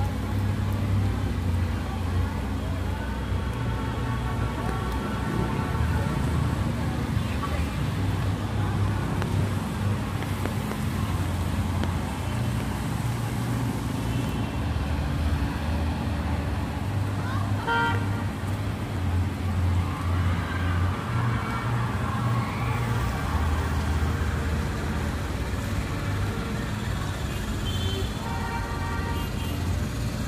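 City street traffic: a steady low engine rumble from buses and other vehicles passing close by, with voices of passers-by. A short horn toot sounds about two-thirds of the way through.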